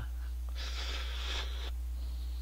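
A person slurping ramen noodles: one airy slurp lasting about a second, starting about half a second in, over a steady low hum.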